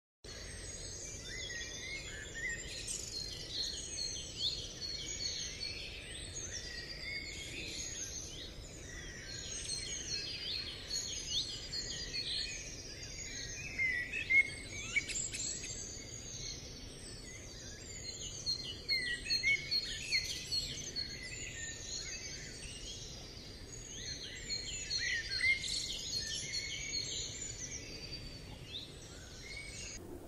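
A chorus of songbirds chirping and singing, many short overlapping calls and trills with a few louder chirps now and then.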